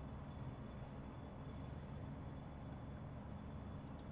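Faint steady room tone from an open microphone: low hum and hiss with a faint high whine, and a tiny click near the end.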